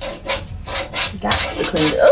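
A toilet being scrubbed by hand: repeated rasping scrub strokes, about three a second.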